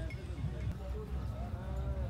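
Cattle mooing, with a longer drawn-out call in the second half.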